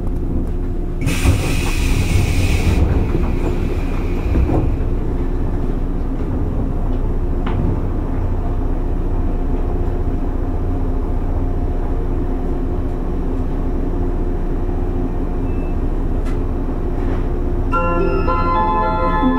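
JR East 115-series 1000-subseries electric train standing at a station, its underfloor equipment giving a steady hum. About a second in, a burst of air hisses for roughly two seconds.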